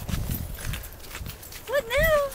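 Footsteps on a dirt trail and the handheld camera rubbing against clothing. About a second and a half in, a brief high vocal cry slides up and down.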